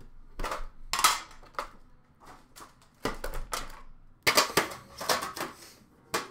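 A trading card tin being opened and its packs of hockey cards taken out and set down: several bursts of sharp clicks, clatter and rustling, loudest a little past four seconds in.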